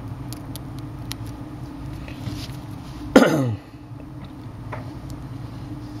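A man clears his throat once, a short sound falling in pitch about three seconds in, over a steady low hum and a few faint clicks.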